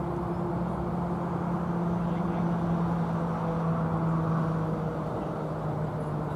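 A steady low engine hum with a faint hiss beneath it, its pitch dropping slightly near the end.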